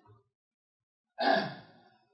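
Quiet, then about a second in a man's single short sigh breathed close to a handheld microphone.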